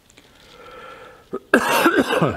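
A man coughing into his fist: a quiet throat-clearing rasp builds up, then comes one short cough and, near the end, a loud harsh cough.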